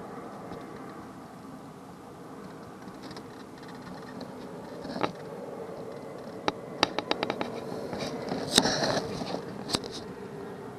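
Sharp clicks and knocks inside a small boat over a steady low hum: one about halfway, a quick run of them a little later, and the loudest knock near the end.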